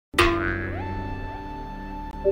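Electronic sound effect or music cue starting abruptly out of silence: a sharp hit, then tones gliding upward that settle into steady held notes.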